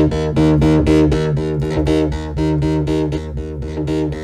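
FXpansion DCAM Synth Squad Cypher software synth playing a loud bass preset: a fast run of repeated notes, about seven a second, over a deep sustained low end.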